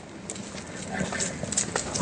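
An audience beginning to applaud: a few scattered hand claps that grow more frequent, building toward full applause.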